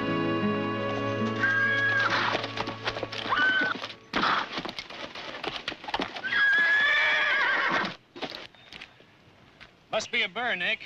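Horses neighing three times, the last whinny long, over the clopping of hooves; orchestral music fades out in the first second or two.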